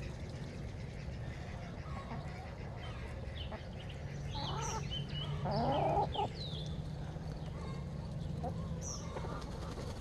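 Backyard poultry flock of chickens and ducks making soft, scattered calls and clucks while feeding, with a short louder run of calls about five seconds in.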